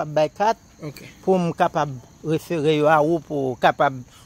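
A man talking, with crickets chirping steadily and high-pitched behind him.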